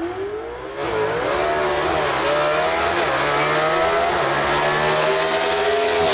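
A straight-axle gasser drag car launching from the starting line at wide-open throttle. The engine note climbs and gets loud about a second in, then rises and dips several times as the car is shifted up through the gears.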